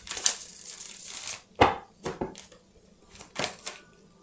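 A deck of tarot cards being shuffled by hand: a soft papery rustle, then a string of irregular card snaps and taps, the sharpest about one and a half seconds in.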